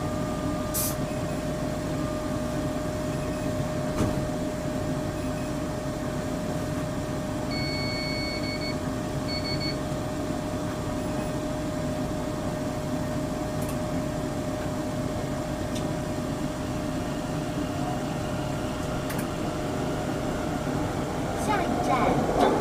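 Steady electrical hum and a steady whine from a metro train's cab while it stands in a tunnel, with an electronic beep about eight seconds in and a shorter one just after. Near the end the train starts off and the running noise swells.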